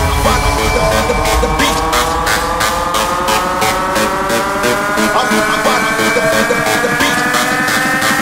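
UK hardcore electronic dance music with a fast, steady beat and a synth line rising slowly in pitch. Under it runs a deep, loud rumble that enters just before, typical of a sampled rocket-launch engine roar following the countdown sample.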